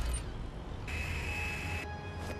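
Quiet cartoon soundtrack: a low rumble under soft background score, with a thin steady high tone held for about a second in the middle.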